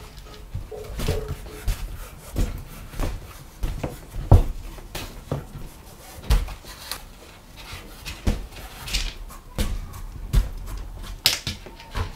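Leather being hand-stitched: an irregular series of knocks and rustles, about one a second, as the needle and thread are worked through the stitching holes and the stiff leather pieces are handled and shifted, the loudest about four seconds in.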